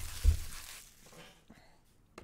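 A cardboard trading-card display box set down on a table, one low thump about a quarter second in, followed by a short rustle that fades away.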